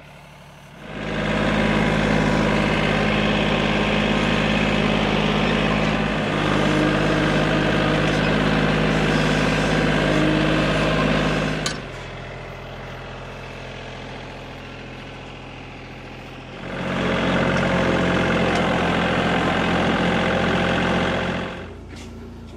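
Engine running steadily. It is loud for about ten seconds, drops to a lower, quieter hum for about five seconds, then comes back loud before fading out near the end.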